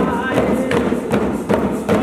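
Tifa hourglass hand drums beaten in a steady rhythm of about two to three strikes a second.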